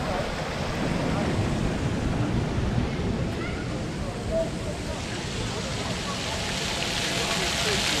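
Wind buffeting the microphone of a moving bicycle as a low rumble, with faint voices of people nearby. Near the end a hiss of spraying water from fountain jets grows louder as the bike nears them.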